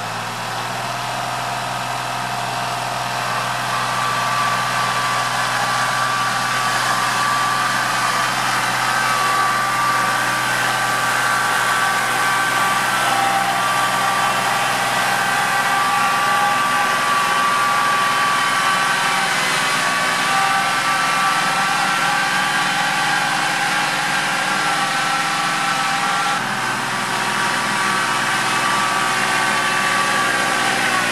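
Kubota compact diesel tractor pulling a subsoiler shank through soft, wet ground, its engine running steadily under load. The engine grows louder over the first few seconds, then holds steady, with a high whine over the drone.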